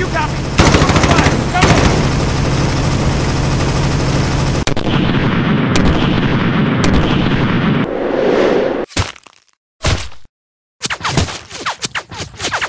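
Rapid automatic gunfire from rifles and a machine gun, shots running together into a continuous din for about eight seconds. It then drops away almost to nothing, broken by one short burst, and scattered single shots start again near the end.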